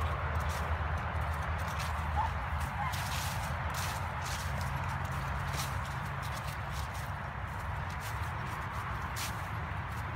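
Footsteps crunching and rustling through fallen leaves on a woodland path, irregular crisp steps over a steady low rumble of wind or handling on the phone's microphone.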